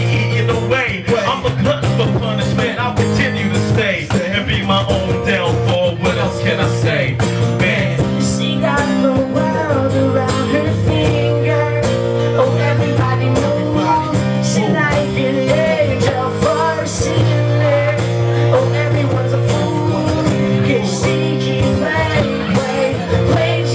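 Live band playing a rock-blues groove, acoustic guitars strumming over drums and a steady low bass line, loud and continuous.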